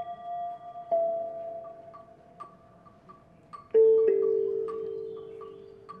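Vibraphone notes struck singly with soft mallets: one about a second in, then a louder pair near four seconds, each left to ring and fade slowly. Underneath runs a faint, quick ticking pulse of about two and a half ticks a second.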